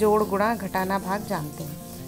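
A woman's voice over a steady background hiss.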